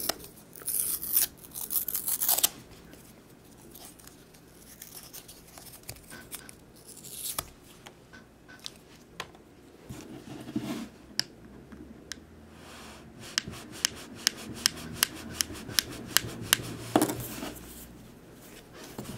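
A new razor blade pulled from its paper wrapper, with crinkling tears over the first couple of seconds. Then the steel blade is scraped across the glass screen of a Samsung P3 MP3 player in faint strokes, ending in a run of sharp ticks, about three a second, a few seconds before the end.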